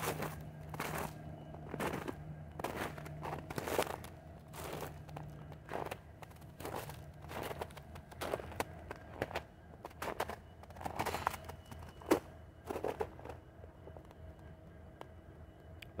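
Footsteps on a snow-covered path, about one step a second, thinning out near the end.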